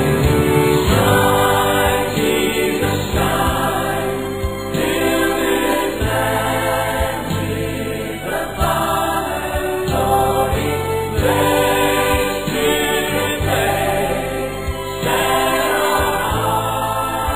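Choral gospel music: a choir singing sustained chords over a steady low beat.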